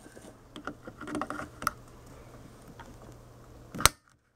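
Faint handling clicks, then near the end one sharp snap of side cutters clipping through the lead of a shorted diode on a TV power-supply board.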